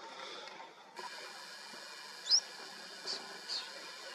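Faint outdoor background hiss with one short, high rising chirp a little over two seconds in, the loudest sound, followed by two fainter high chirps about a second later.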